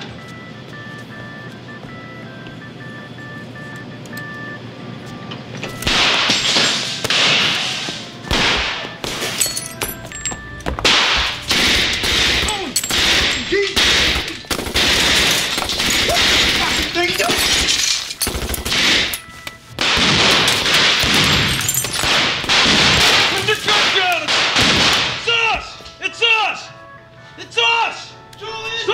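A shootout of rapid, continuous gunfire, submachine-gun bursts and handgun shots, breaking out about six seconds in and running for some twenty seconds, with things smashing. It plays over background music, and shouting comes near the end.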